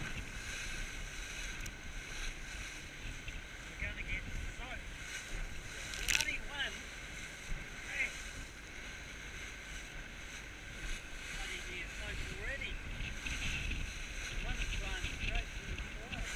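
Small motorboat running fast through choppy sea: a steady engine and rushing-water noise with spray hitting, and one sharp, loud slap about six seconds in as the hull hits a wave.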